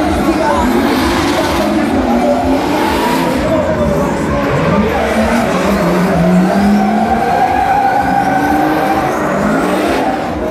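Drift cars' engines revving hard, the pitch rising and falling again and again, with tyre squeal as two cars slide sideways in tandem.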